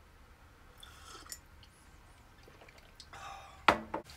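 Faint slurping sips of hot coffee from a ceramic mug, then a single sharp knock near the end.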